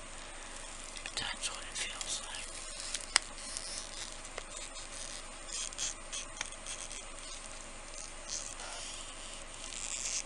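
A flexible silicone mold being bent and peeled off a cured epoxy resin coaster by hand: scattered soft rubbery rustling and scraping, with one sharp click about three seconds in.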